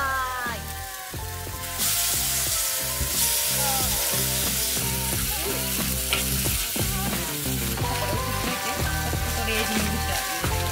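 Meat sizzling on a hot grill plate, a steady hiss that grows louder about two seconds in, with background music underneath.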